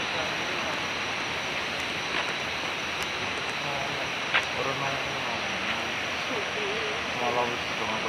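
Steady rushing of river water, with faint low voices in the second half and a single sharp click about four and a half seconds in.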